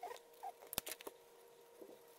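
Faint squeaks and ticks of a POSCA paint marker's tip working over card: two short squeaks in the first half second, then a few sharp clicks around the middle.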